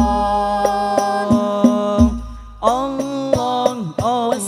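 Al-Banjari sholawat: male voices singing a devotional chant to rebana frame drums, which beat a pattern with deep bass strokes. A long held note in the first half gives way, after a short quieter gap a little past halfway, to a new phrase with wavering, bending pitch.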